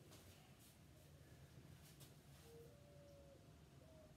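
Near silence: room tone, with a few faint ticks in the first two seconds and a brief faint thin tone in the second half.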